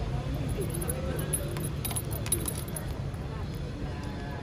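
Keys on a scooter key fob jingling, with a few light metallic clinks about two seconds in, over a steady low rumble and faint murmured voices.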